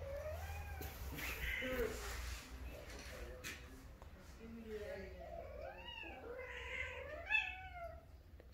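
Persian cat yowling in a series of drawn-out calls that rise and fall in pitch, a few at first and then a quicker run of them in the second half. This is the caterwauling of a female cat in heat.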